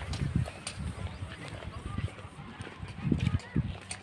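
Footsteps of a person walking on a paved path, heard as irregular low thuds close to the microphone, a few per second.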